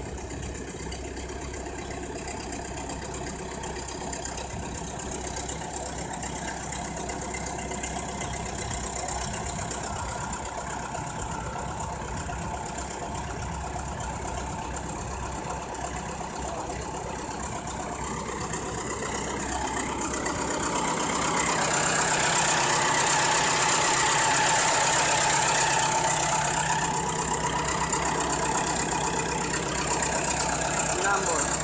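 Small crawler bulldozer's engine running as the machine drives, growing louder about two-thirds of the way through as it comes close.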